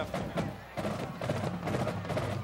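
Percussive music: a run of quick drum hits over a steady low background din, dipping briefly about half a second in.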